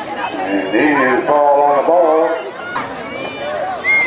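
Several people's voices shouting and calling out at a football game, with one drawn-out shout in the middle.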